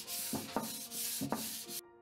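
Sandpaper rubbed by hand over a wooden chair seat in repeated back-and-forth strokes, cutting off suddenly near the end, with soft background music underneath.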